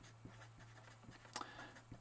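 Faint marker pen writing on paper: a scatter of short, quiet strokes and taps over a steady low hum.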